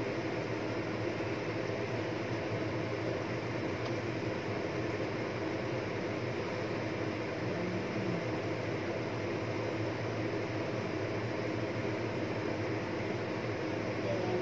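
Covered frying pan of Indian lettuce cooking on the stove: a steady hiss of steam with a low hum beneath it.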